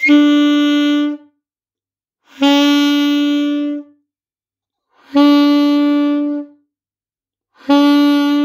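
Alto saxophone playing the beginner's first note, written B (left thumb and first key), as four separate held notes of about a second and a half each, all on the same pitch with short breaths between. The last note starts near the end and is cut off by it.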